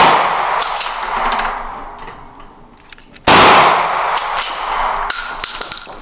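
Shotgun fire on an indoor range: the echo of a shot dies away at the start, a few short clicks come, then a single loud shot about three seconds in rings on in the hall, followed by more clicks from the gun being handled.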